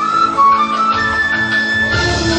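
Vietnamese bamboo transverse flute (sáo) playing a solo melody over a lower accompaniment: a few short notes, then a long held higher note from about a second in.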